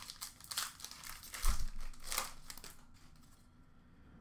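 Foil wrapper of a trading-card pack crinkling as it is handled, in a run of short rustles with a soft thump about one and a half seconds in; the rustling dies away about three seconds in.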